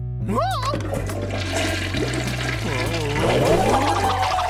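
Cartoon toilet flush: a long rush of swirling water that grows louder toward the end, over low background music.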